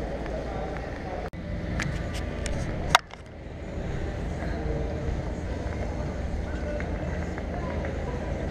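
Outdoor city background noise: a steady low rumble with faint distant voices, and a few light clicks in the first three seconds. A sharp click comes about three seconds in, after which the background gradually grows louder.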